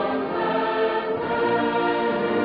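A choir singing a slow sacred piece in held notes, with instrumental accompaniment underneath.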